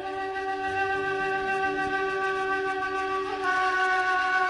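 Instrumental break in a Kabyle song: a flute-like melody plays long held notes. A new note enters right at the start and the melody steps to another about three seconds in.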